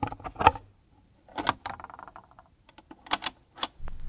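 A sparse, irregular series of sharp clicks and knocks, typewriter-like, with a brief faint tone about halfway through.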